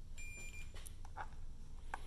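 A digital multimeter giving a single short, high beep about half a second long as it is switched on and runs its all-segments display self-test. A faint low hum runs underneath.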